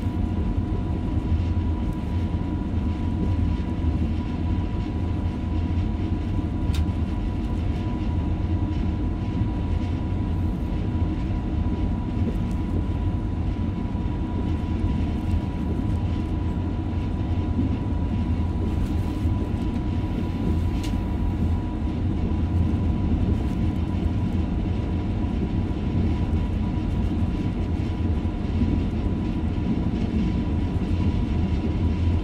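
Steady running noise of a passenger train at speed, heard from the driver's cab: a low rumble of wheels on rail with a faint steady whine held above it.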